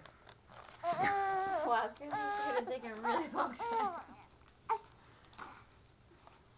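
A baby fussing: several long, whiny, wavering vocal sounds in a row over about three seconds, followed by a short sharp click.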